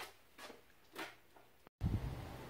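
Quiet indoor room tone with three faint, short rustles about half a second apart. Near the end the sound drops out for an instant and a steady low outdoor background noise takes over.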